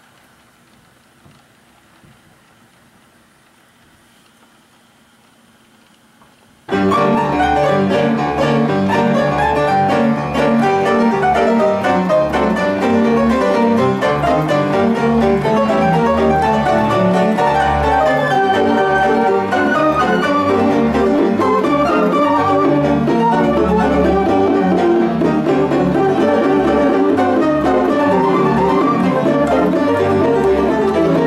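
An American Fotoplayer, a silent-film theatre player piano with organ-pipe string voices, starts playing a 1917 one-step from a piano roll about seven seconds in and keeps going at a steady dance beat. Piano and violin- and cello-like pipe voices sound together, with the stops changed by hand.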